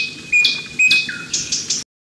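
Bird-like chirping: short, sharp calls with a held high note, about two a second, cutting off suddenly just before the end.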